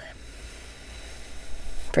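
A woman drawing a slow, deep breath in, heard as a soft steady hiss, as a guided breathing exercise calls for an inhale.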